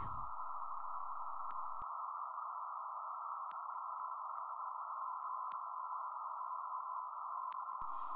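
Radio receiver audio from a meteor-detection feed: a narrow band of static hiss with a faint steady beep-like tone in it that grows stronger about five seconds in, and a few sharp clicks. The tone is the radio echo of an unusually long-lasting event, which the listener takes for either an extremely big meteor burning up in the atmosphere or something unknown.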